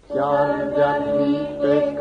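Singing of a Romanian Christian hymn, with accompaniment. The singing comes in just after a short break that follows a held chord.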